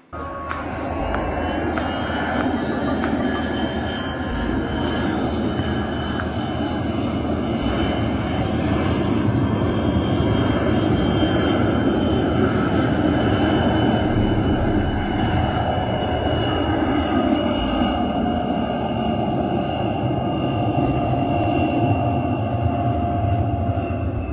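Beriev Be-200 amphibious firefighting jet, its twin turbofans running with a steady whine and a thin high tone over the noise, as it skims low across a reservoir scooping up water.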